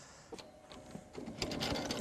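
A cymbal being fitted onto a drum-kit cymbal stand: a run of small metal clicks and rattles from the stand's fittings, faint at first and busier in the second half.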